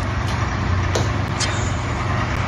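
Loud, steady rumbling background noise with a low hum, and a brief smack about a second in as a cup of whipped cream is pushed into a man's face.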